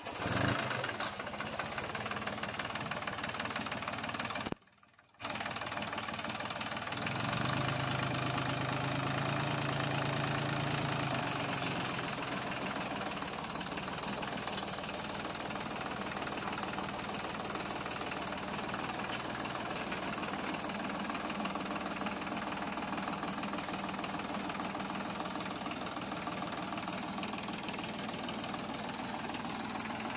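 Compact diesel tractor engine running with a steady clatter while it drags a log on a chain. For a few seconds, about a quarter of the way in, the engine gets louder and deeper under more throttle. About five seconds in there is a half-second break in the sound.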